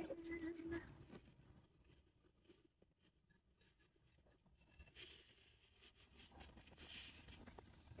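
Faint rustling and crinkling of a cloth drawstring bag being handled as a singing bowl is taken out of it, louder over the second half.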